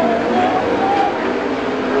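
Several winged sprint cars' engines running hard on a dirt oval, their pitch wavering up and down as they go through the turns.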